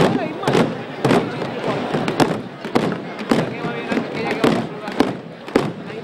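A processional drum beating a slow, steady march, a little under two strokes a second, with a crowd murmuring beneath it.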